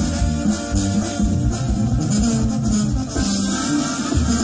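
Loud band music with a prominent moving bass line and a steady beat, from a regional Mexican group playing live for dancers.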